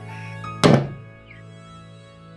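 A fist banging once on a table about half a second in, a sharp thump over soft background music of sustained notes.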